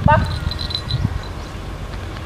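A single spoken command, "Бах!" ("bang"), then steady low outdoor rumble with a few faint high chirps in the first second.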